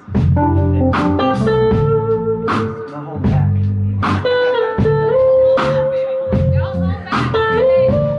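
Live blues band: an electric guitar plays a lead line with sustained, bending notes over a drum kit and keyboard groove.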